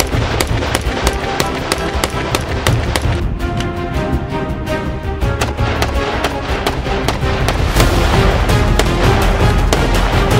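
AR-15 rifles fired in quick succession, several sharp shots a second, under loud theme music.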